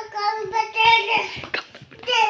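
A young child's high-pitched voice, drawn out in sing-song vocal sounds without clear words, with a brief thump about one and a half seconds in.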